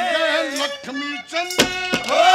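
Male ragni singer's voice through a stage PA, with the steady accompaniment drone dropping out. Two sharp drum strokes come about a second and a half in.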